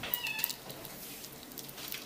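Children's bead jewellery on its packaging card being handled, with a few light clicks. A brief high-pitched, curving squeak-like call sounds near the start.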